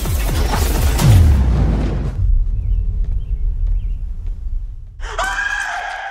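Cinematic trailer sound design: a loud booming hit with a falling low rumble, settling into a low drone. About five seconds in, a high pitched tone with overtones swells in sharply, then breaks off at the end.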